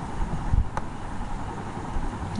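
Steady low background rumble and hiss with a low thump about half a second in, then a single sharp click, like a computer mouse button, a little later.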